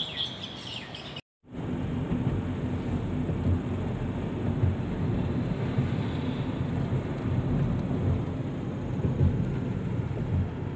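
Birds chirping briefly, cut off suddenly about a second in; then the steady low rumble of road and wind noise from riding in a moving car, with uneven surges.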